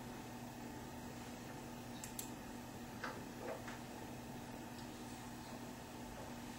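Quiet room tone with a steady low hum, broken by a couple of faint clicks about two seconds in and a few small soft knocks or rustles around the three-second mark.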